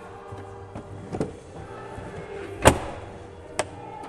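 Background music with steady held tones. Over it come a few clicks and one louder clunk about two and three-quarter seconds in, from the pull-handle latch of a Volkswagen Sharan's third-row seat being released as the seat folds up out of the boot floor.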